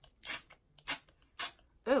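Finger-pump spray bottle of Beacon adhesive spritzing glue onto paper: three short hissy sprays about half a second apart. The pump sprays unevenly and spatters the glue all over.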